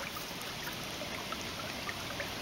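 Shallow creek water trickling over rocks and gravel, a steady, quiet wash with a few faint ticks.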